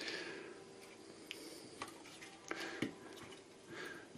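Faint handling sounds of a sewing machine's plastic motor unit being turned over in the hand: a soft rub at first, then a few light, sharp clicks.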